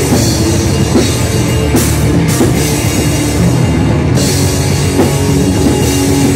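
Black metal band playing live at full volume: distorted guitars and bass over a drum kit, in one dense, unbroken wall of sound.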